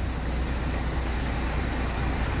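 Truck diesel engine idling steadily: a low, even rumble.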